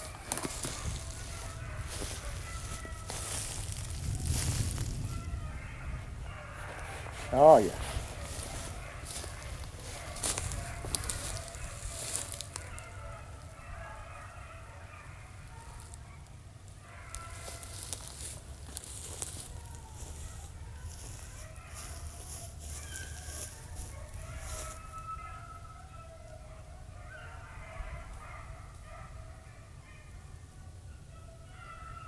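Beagles baying as they run a rabbit through the brush: one loud, close bawl about seven seconds in, with fainter baying from the pack through the rest. Rustling and crackling over the first dozen seconds.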